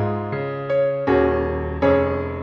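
Solo piano playing a hymn accompaniment: four chords struck over a moving bass, each left to ring and fade before the next.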